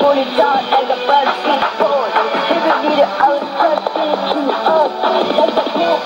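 Music with a singing voice, received as a shortwave AM broadcast on 11560 kHz and heard through the speaker of a Sony ICF-2001D receiver: thin, narrow-band sound with no bass.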